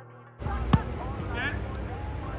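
Background music cuts off and live pitch sound comes in: a football kicked once with a sharp thud less than a second in, over open-air noise, with young players shouting and calling on the field.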